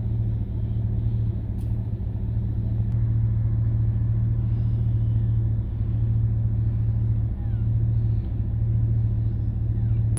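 A steady, loud low hum or rumble that holds without a break, with a light hiss above it.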